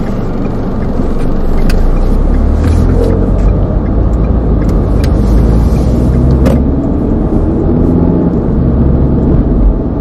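Car running on the road, heard from inside the cabin: a steady low engine and road rumble that grows louder about a second in.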